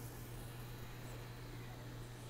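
Faint, steady sound of a stockpot of seasoned water starting to boil, with a steady low hum underneath.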